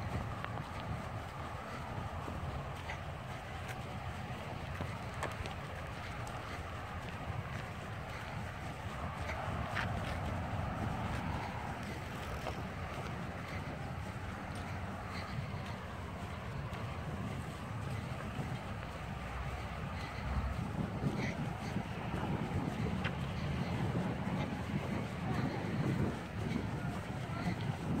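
Steady wind rushing over a phone microphone carried along on a moving bicycle.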